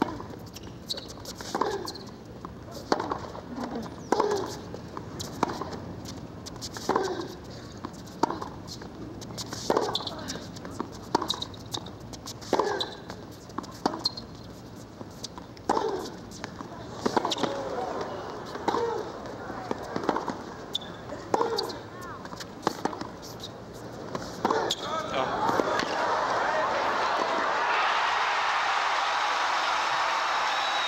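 Tennis rally: racket strikes on the ball trading back and forth about once a second, some with a short grunt from the player. About 25 seconds in, the point ends and loud crowd applause and cheering rise and continue.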